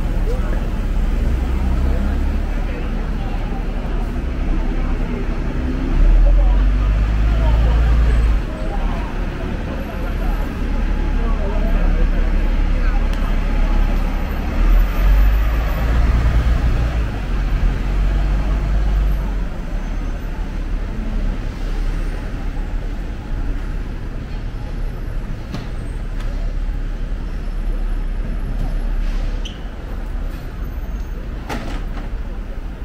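Busy city street traffic: double-decker buses and taxis running past, with a deep rumble that swells twice as heavy vehicles go by, under the scattered chatter of passers-by.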